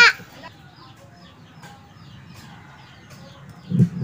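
Faint, quick high chirps like small birds calling, repeating every few tenths of a second. A brief low voice sound comes just before the end.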